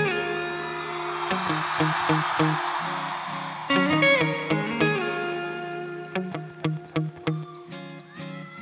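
Live band music led by electric guitar: held notes over a noisy wash for the first few seconds, then separate plucked notes that grow sparser and quieter near the end.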